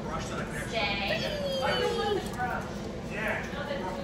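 Indistinct voices talking, with a drawn-out vocal sound that falls in pitch about two seconds in.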